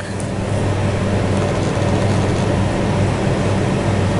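Steady low background hum with an even hiss over it, unchanging throughout: constant machine-like room noise.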